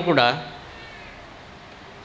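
A man's voice through a microphone: the drawn-out end of a spoken syllable in the first half second, then a pause with only faint hall hiss.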